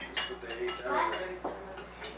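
Cutlery clinking against plates and dishes at a dinner table: a string of sharp, irregular clinks with short high ringing. A person's voice speaks briefly about a second in.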